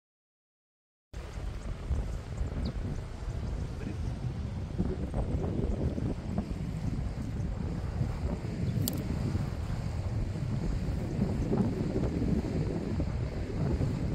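Wind buffeting the microphone in a steady low rumble over the wash of the sea, starting suddenly about a second in after dead silence.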